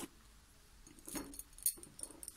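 Light handling noise of beaded fabric: a brief cloth rustle about a second in, then a few small sharp clinks of the sewn-on pearl beads knocking together, the loudest just before the end.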